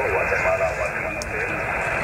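Amateur radio transceiver receiving: steady hiss and static through its speaker, cut off sharply in the upper range, with faint voices in the noise.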